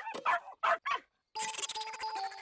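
Cartoon dog giving a quick run of short barks and yips, then a bright musical jingle that starts a little past halfway through.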